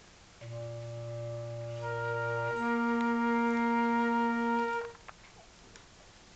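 Flute and clarinet playing a short phrase of long held notes. The clarinet starts alone on a low note, the flute enters high above it, and the clarinet moves up to a higher note. Both stop together a little before the end.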